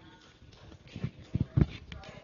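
A few irregular dull thumps, the loudest about one and a half seconds in, from a handheld microphone being jostled as the man carrying it walks off a stage.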